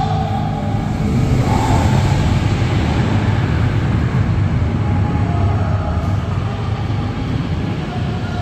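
Indoor steel roller coaster train running along its track overhead, a loud steady rumble that swells about a second in and eases slightly near the end.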